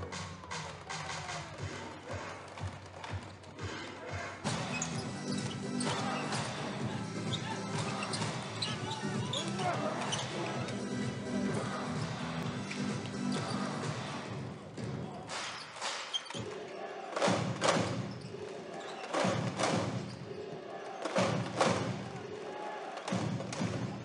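Basketball game sound from an arena: music over the arena speakers with voices, then a run of sharp loud thuds from the ball bouncing on the court and other impacts in the second half.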